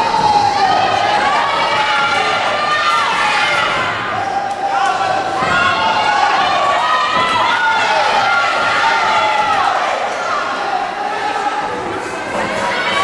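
Several voices shouting over one another in long, loud calls, as from corners and spectators urging on Thai boxers, with occasional thuds of kicks and punches landing.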